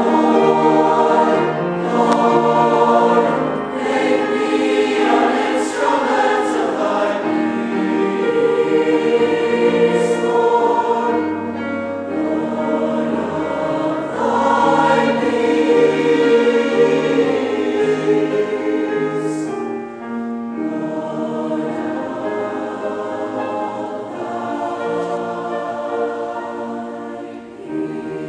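Mixed youth choir of male and female voices singing an anthem in sustained chords, with sung consonants audible; the singing drops to a softer passage about twenty seconds in.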